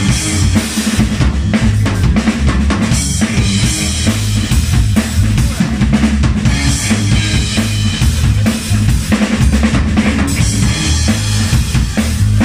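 Live band playing an instrumental passage without vocals: a drum kit with kick and snare over a heavy electric bass line, with electric guitar through a Marshall amplifier.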